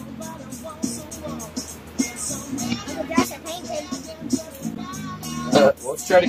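Background music playing, with a child's voice over it and a louder burst of voice near the end.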